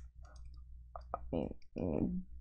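Computer keyboard keys clicking a few times, faint and irregular, as text is typed and deleted, with a short murmur of voice in the second half.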